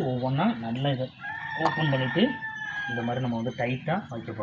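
A long, drawn-out bird call held for about two seconds in the middle, over a man's voice.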